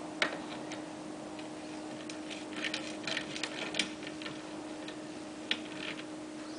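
Sharp metallic clicks and clusters of quick ticks from a hand tool working a nut on a wheelbarrow handle bolt. There is a single loud click about a quarter second in, a busy run of clicks between two and four seconds in, and another click near the end.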